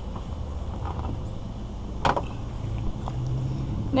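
Steady low outdoor rumble with a single short knock about two seconds in, as of a hand or gear bumping the plastic hull of a sit-in kayak.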